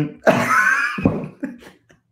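A short burst of laughter from a man about half a second in, followed by a few softer breathy sounds.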